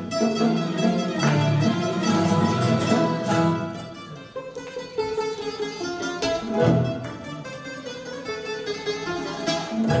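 Live chamber ensemble playing a hasaposerviko, a Greek dance tune, on piano, bouzouki, guitar, two violins, cello and percussion. The full sound thins out about four seconds in, leaving plucked strings to the fore, with strong accents near the end.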